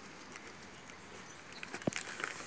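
Faint rustling and crinkling of gift wrapping paper being pulled off a small box, with one short sharp sound near the end.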